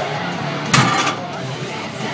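Loaded deadlift barbell with iron plates set back down on the platform after a 615-pound lockout: one heavy clanging impact about three-quarters of a second in, over a murmur of voices in a hall.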